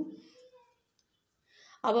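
A woman's speaking voice trails off, then about a second and a half of near silence, and her speech starts again near the end.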